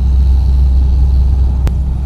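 A steady low rumble, with one sharp click about three quarters of the way through.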